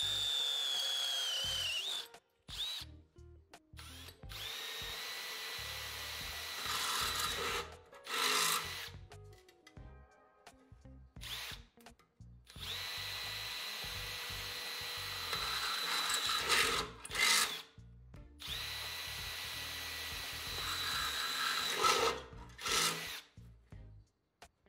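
Cordless drill running a Gehring stepped-tip twist bit through thin metal. First the bit cuts into a metal pipe with a whine that drops in pitch. Then come three separate holes through a sheet-metal pail, each a few seconds of steady motor whine that ends in a louder burst of cutting, with short silences between.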